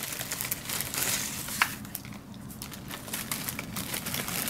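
Paper and plastic craft supplies crinkling and rustling as they are handled and set down, with scattered small ticks and taps.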